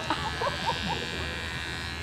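Electric hair clippers buzzing steadily as they cut through a long, thick beard.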